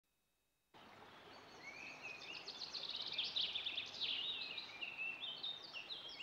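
Birds chirping and twittering in quick, gliding calls over a faint steady background noise. It fades in after about a second of silence and grows louder.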